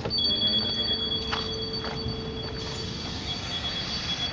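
Door warning signal of a SOR NB18 articulated city bus sounding: a steady, high two-tone beeping that starts suddenly and keeps going, with a single knock about a second in.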